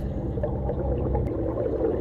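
Steady, low underwater ambience laid under the story: a deep, even rumbling drone with no distinct events.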